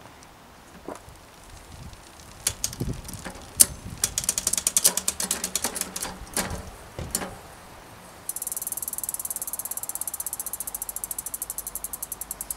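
Bicycle drivetrain on a work stand: a SRAM NX Eagle 12-speed chain and rear derailleur clatter and click as the cranks turn and the chain shifts across the cassette. From about eight seconds in, the Shimano Deore rear hub's freehub ticks steadily and rapidly as the wheel spins on.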